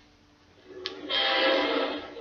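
A read-along vinyl record playing: a short pause, then a sustained pitched sound rich in overtones swells in about half a second in and holds steady for over a second.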